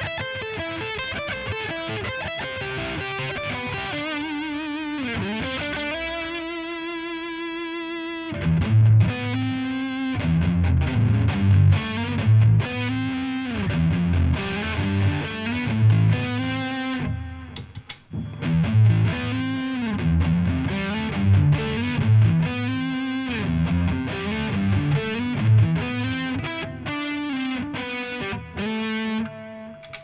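Fret King Super Hybrid electric guitar on its neck pickup through heavy metal distortion with a little delay. It plays a lead line with a bent, wavering note and a long held note for about the first eight seconds, then switches to short, choppy low riffs with a brief break about halfway through.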